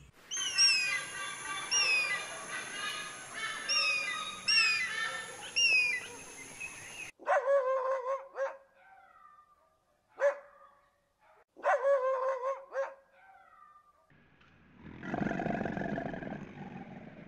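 A small dog, seen as a Pomeranian, gives a string of short, high, whining yelps with gaps between them. Before that comes a stretch of many repeated high, falling chirps over other pitched sounds, which cuts off abruptly, and near the end a low rushing sound begins.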